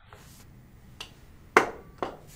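A sharp click about a second and a half in, with a fainter tick about a second in, over low background hiss: the click that advances a presentation slide on the computer.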